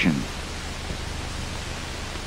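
Steady hiss with a low hum underneath: the background noise of an old film soundtrack, with no other sound in it.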